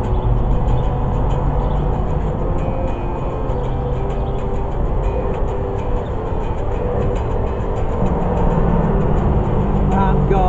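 Electric guitar played through an amplifier, chords strummed continuously, with the bass note of the chord stepping up about eight seconds in.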